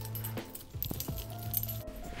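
Soft background music with steady held tones and a low bass line. Under it, a metal chain belt jangles and clinks faintly as it is handled and wrapped around the waist.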